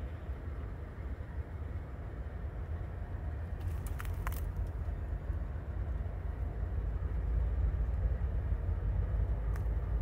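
Low, steady rumble of diesel locomotives running in the rail yard, growing slightly louder, with a few sharp clicks about four seconds in.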